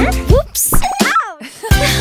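Cartoon fall sound effects: a child's voice says "oops", the backing music cuts out, and a whistle-like tone glides down in pitch. A thump about three-quarters of the way through brings the music back in.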